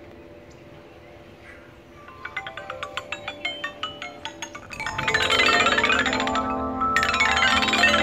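Outdoor chime panel of upright metal tubes struck with wooden mallets: separate ringing notes about four a second from about two seconds in, then fast sweeps along the row of tubes that build into a loud wash of overlapping ringing tones, with a short lull before a second sweep near the end.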